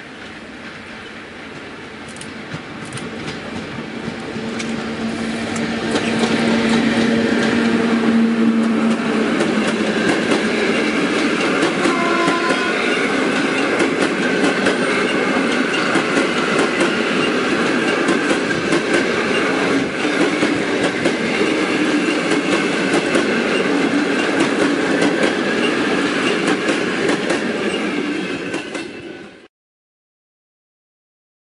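An EU07 electric locomotive hauling a passenger train approaches and grows louder over the first six seconds. A low steady tone sounds from about four to nine seconds in. Then comes a steady loud rush of carriages passing close, with wheels clicking over the rail joints. The sound cuts off suddenly just before the end.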